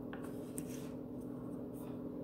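A pen scratching on paper in a few short strokes while drawing lines, faint, over a steady low hum.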